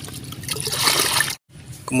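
Liquid pouring from a plastic jug into a bucket of water, trickling and splashing. The sound cuts off abruptly about one and a half seconds in.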